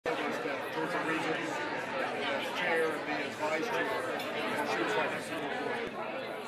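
Crowd chatter: many people talking at once, a steady babble of overlapping voices with no single voice standing out.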